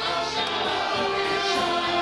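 A group of men and women singing a gospel song together into microphones, with held notes over a rhythmic musical accompaniment.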